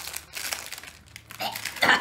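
Small clear plastic snack packet crinkling and crackling as it is handled and opened with both hands. A man laughs near the end.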